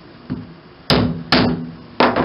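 Claw hammer striking a center punch held on a wooden blank: a light tap, then two sharp blows about half a second apart, each with a short ring. The punch is marking the point where the drill-press bit will be lined up.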